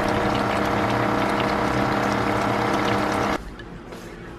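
Steady whirring hum of a fan motor in the kitchen, with faint ticking from the pan of pork afritada simmering on the stove; it cuts off abruptly about three and a half seconds in.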